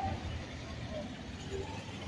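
Street traffic: a steady low rumble of passing vehicles, with faint distant voices in the background.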